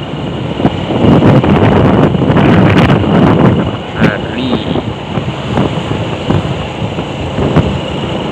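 Wind buffeting a microphone on a moving motorcycle, loud and unsteady, over the running of a Honda Supra X 125's single-cylinder engine on a wet road.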